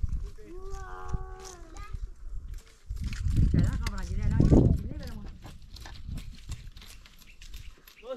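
A drawn-out pitched call about a second in, then a loud, wavering bleat from a farm animal between about three and five seconds in.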